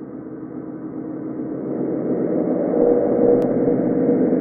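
Logo intro sound effect: a rumbling swell that grows steadily louder and levels off about three seconds in.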